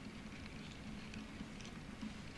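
Quiet room tone: a steady low electrical hum under faint background noise, with a few faint soft ticks.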